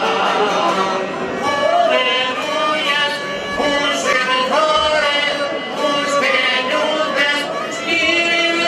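Albanian folk music: male voice singing to a bowed violin and strummed long-necked lutes.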